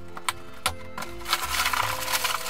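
A small LEGO cardboard box being opened: two sharp clicks, then a rustle of packaging lasting about a second, over soft background music.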